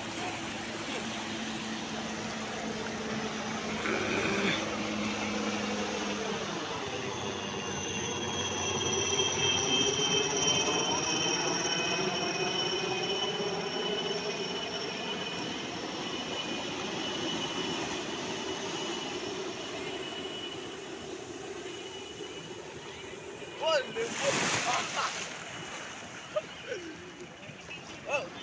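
A jet aircraft passing overhead, its whine slowly falling in pitch, loudest about ten seconds in and fading away over the following seconds. Surf washes in the background.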